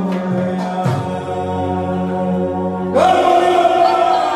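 Hindu devotional aarti chanting with music for Ganesh, with a couple of sharp claps or strikes in the first second. About three seconds in, a louder held note starts abruptly with a slight upward slide.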